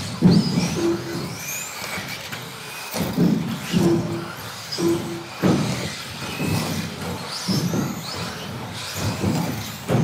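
Electric RC stock buggies racing: motor whine rising and falling as they accelerate and brake, with sharp knocks from landings and hits on the track boards several times.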